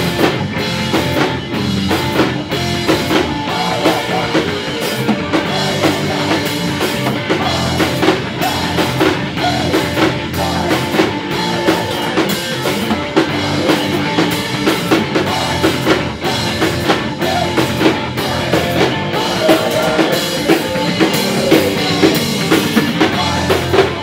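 Rock band playing live at full volume: a Pearl drum kit keeping a steady, driving beat under electric guitar and bass guitar.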